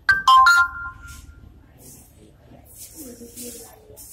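An electronic chime: a quick run of three or four clear notes, loud and sudden, dying away within about a second and a half.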